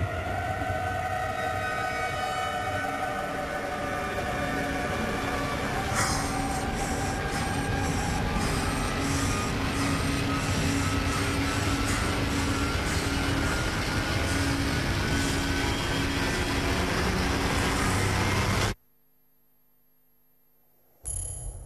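Film trailer soundtrack: a dense, rumbling wall of sound with several held tones, a repeating low pulse from about six seconds in and one tone rising slowly in pitch. It cuts off abruptly near the end into near silence.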